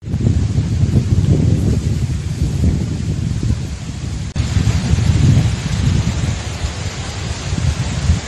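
Wind buffeting a phone's microphone outdoors: a loud, low, uneven rumble that starts abruptly and cuts out briefly about four seconds in.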